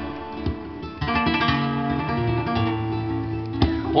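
Flamenco acoustic guitar playing a soleá passage between sung verses, plucked notes picking up after a quieter first second, with a sharp strum near the end.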